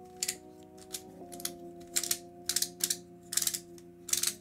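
Plastic skewb shape-mod twisty puzzle being turned in the hands: short, sharp clicks of its pieces knocking and snapping as layers are rotated, at an uneven pace. Quiet background music with long held chords underneath.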